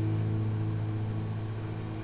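A strummed chord on a steel-string acoustic guitar ringing out and slowly fading.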